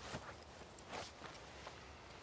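Two soft, short rustling steps of a person shifting on grass and dirt, with a few faint clicks of twigs or clothing between them.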